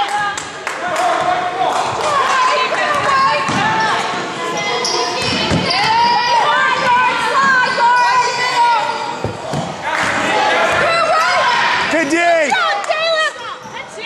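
A basketball bouncing on a hardwood gym floor, sharp knocks echoing in the hall, under a continual mix of players' and spectators' voices and shouts.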